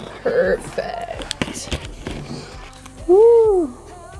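A woman's voice making wordless sounds, with one loud rising-and-falling sung note about three seconds in, and a few sharp clicks in between.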